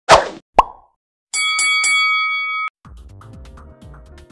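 Edited transition sound effects: two quick swooping pops in the first second, then a bright chiming chord held for about a second and a half, followed by soft background music at a lower level.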